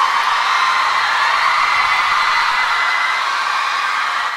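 Audience of fans cheering and screaming, a steady high-pitched wash of sound with no music under it.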